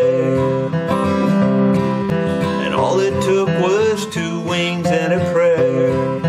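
Steel-string dreadnought acoustic guitar strummed in a steady rhythm, playing a country tune.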